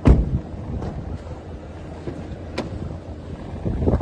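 A vehicle door shutting with a heavy thump right at the start, then wind buffeting the microphone, with a small click about two and a half seconds in.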